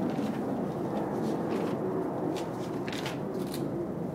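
Ka-Bar knife blade scraping across chin stubble in several short strokes, over a steady low background hum. The blade is not sharp enough to cut cleanly, so it scrapes the hair off.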